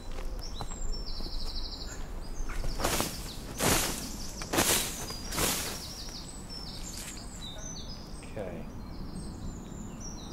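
A cloth sweep net being swung through a stand of ferns: four quick rustling swishes, each under half a second and roughly a second apart, about three seconds in.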